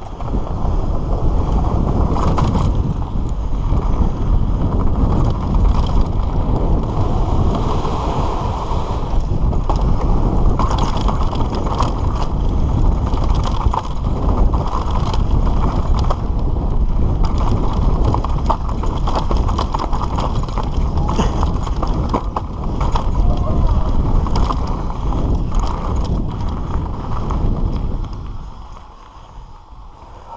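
A Trek Session 9.9 downhill mountain bike ridden fast over rough, rocky trail, with wind buffeting the camera microphone. The frame and chain rattle and clatter constantly over the rocks. The noise drops away abruptly near the end as the bike slows.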